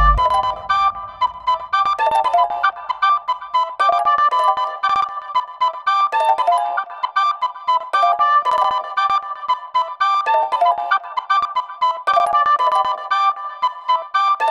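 Background music: a bright melody in short repeating phrases, one roughly every two seconds, with no bass or drums after a heavy low beat cuts off at the start.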